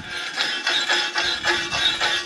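Stainless steel wire brush scrubbing an aluminum part in quick back-and-forth strokes, about five a second, scraping off the oxide layer before TIG welding.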